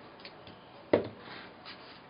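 Hands pressing and rubbing a warm sheet of EVA foam around a small ball, a faint rubbing sound, with one short sharp tap about a second in.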